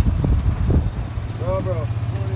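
Golf cart riding: low rumble and wind buffeting on the microphone, then about a second in a steady low motor hum with an even pulse takes over. A short pitched vocal sound comes near the end.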